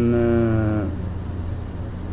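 A man's voice holding one drawn-out hesitation sound for a little under a second, sinking slightly in pitch, over a steady low hum that carries on after it stops.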